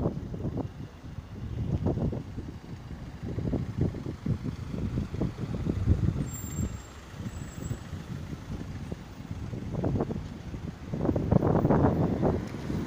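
Street traffic: motor vehicles running and passing close by, a low rumble that swells and fades.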